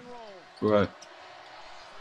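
Faint basketball broadcast audio: a basketball being dribbled on a hardwood court under low arena background noise.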